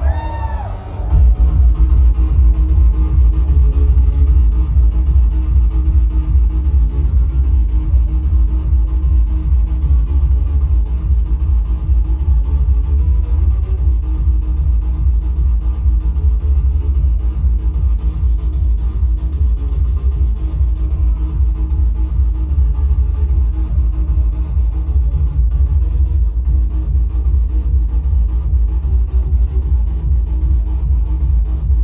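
Electronic dance music played loud through a club sound system at a live DJ set, with a heavy, steady bass beat that comes in about a second in.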